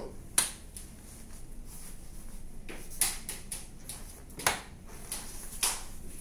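Side-rail latches of a foldable travel crib clicking as they are released and the rails fold down, with about four sharp clicks. The loudest comes about half a second in, and the others fall in the second half.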